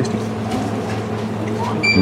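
A steady low mechanical hum, with a short high electronic beep near the end.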